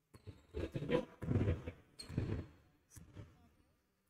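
Faint indoor basketball-court noise in a reverberant gym: a handful of soft, irregular low sounds, such as muffled thuds and indistinct movement, with no commentary over them.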